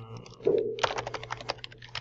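Typing on a computer keyboard: a quick run of keystrokes starting about half a second in.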